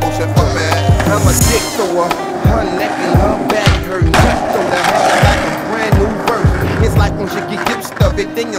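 Hip hop beat with a steady kick drum, with skateboard sounds mixed in: urethane wheels rolling on concrete and the clack of a trick around the middle.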